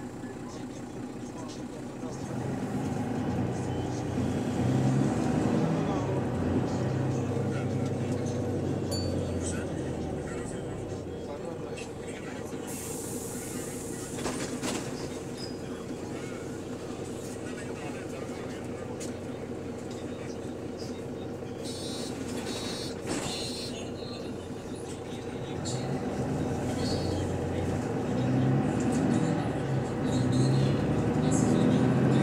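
Interior of the Go-Ahead London bus MEC6 on the move: a steady low rumble and hum that swells as the bus gets going early on and again near the end, with a short burst of hiss about halfway through. Passengers chatter throughout.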